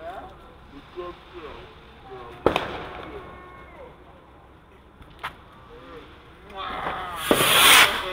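Consumer fireworks going off: a sharp bang about two and a half seconds in, a smaller pop about five seconds in, then a loud hissing, crackling burst near the end.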